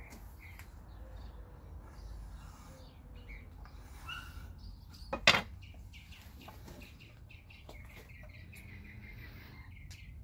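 Faint, scattered bird chirps over a low steady hum, with one sharp knock about five seconds in.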